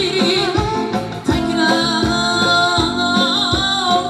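Live Uzbek pop song: a male singer sings a wavering melody through a microphone, backed by electronic keyboard and drums with a steady beat, all amplified through PA speakers.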